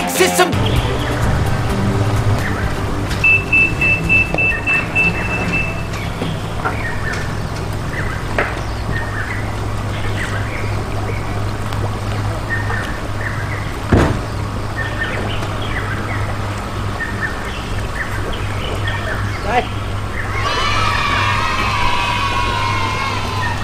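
Outdoor pond-side ambience: a steady low hum with faint short chirps and scattered distant sounds, and a single sharp click about two-thirds of the way in. Near the end a bright music sting comes in.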